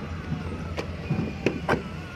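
Wet clay being worked by hand for a mould-made brick: a few short sharp slaps of clay, one a little under a second in and two close together in the second half, over a steady low hum.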